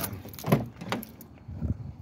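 Keys jangling, with a few short clicks and knocks from opening a car door to get in.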